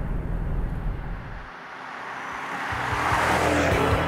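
Maserati Quattroporte V8 driving by, engine and tyre noise. The sound dips about a second and a half in, then swells into a rising rush toward the end.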